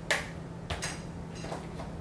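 A few light clicks and taps, the loudest just after the start, from makeup products and their cases being handled.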